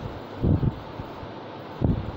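Two short low thumps of air buffeting the microphone, about half a second in and again near the end, over a steady room hum.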